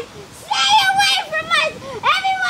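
Boys shouting in high voices, play-acting disgust: a drawn-out cry starts about half a second in and falls in pitch, followed by a shorter falling cry near the end.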